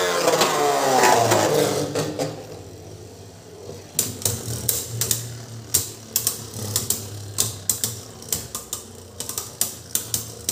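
Two Beyblade Burst spinning tops whirring in a plastic stadium, the whir falling in pitch over the first two seconds. From about four seconds in, a run of sharp clacks as the tops knock against each other, coming faster near the end.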